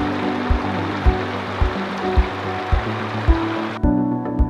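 Waterfall rushing, a steady noise of falling water, under background music with a regular beat just under two a second. The water sound cuts off suddenly near the end, leaving only the music.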